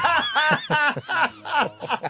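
A man laughing in a quick run of short, pitched laughs, about five or six a second.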